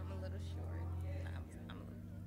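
Quiet whispering and murmured speech near the microphone, over a low sustained bass note that drops away about one and a half seconds in.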